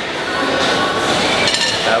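Metal clinking of a loaded barbell and iron weight plates in a weight gym.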